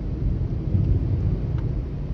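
Low, uneven rumble of a car driving along a road, heard from inside the cabin: engine and tyre noise.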